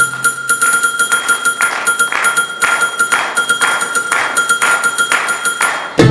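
Bollywood song played live at a break in the arrangement: a held keyboard tone over a steady beat of claps about twice a second, with fast high ticking above. The bass is out throughout.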